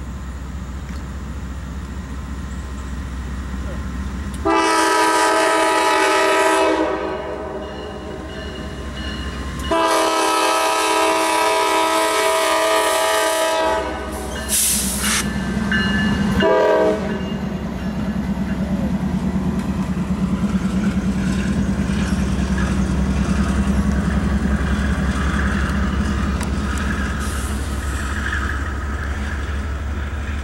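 Norfolk Southern 9667, a GE Dash 9-40CW diesel locomotive, sounds its horn in two long blasts and then two short ones as it approaches. Its engine drone and wheel clatter then swell as it passes close by, and they carry on to the end.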